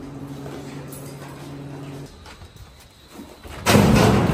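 Cardboard boxes and trash thrown into a metal dumpster, with a loud crash near the end. Before it, a steady low hum for about two seconds.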